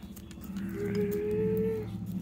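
A child's voice making a mouth-made truck noise: a low buzzing growl with a steady hummed note held for about a second in the middle.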